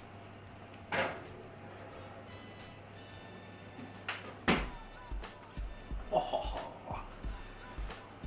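An oven door clunks open about a second in, and a metal loaf tin knocks against the oven as it is pulled out mitt-handed about halfway. From then on, background music with a pulsing bass beat plays.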